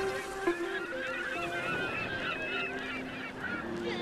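A flock of birds calling in many short overlapping honks and chirps, an ambient sample in a lofi hip hop track, over a few soft held keyboard notes.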